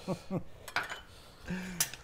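Two light clinks of a kitchen utensil against a dish, about a second apart, as red pepper is tipped into the stew pot.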